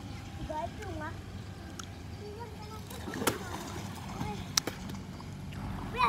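Young boys' voices calling out briefly and faintly over a steady low rumble, with two sharp knocks about three and four and a half seconds in.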